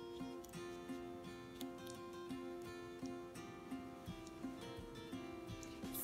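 Quiet background music played on a plucked acoustic guitar, with a new note starting every half second or so.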